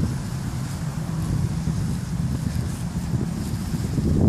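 Wind buffeting the phone's microphone: a steady, uneven low rumble.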